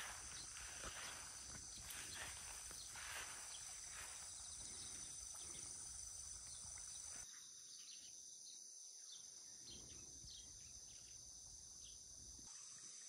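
Faint steady chirring of insects outdoors, high-pitched and unbroken. A soft low noise with faint light ticks under it stops about seven seconds in, leaving only the insects.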